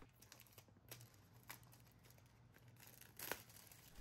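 Near silence with a few faint crinkles and a soft tear as the plastic wrap and seal tab are peeled off a small cardboard earbuds box, the clearest one near the end.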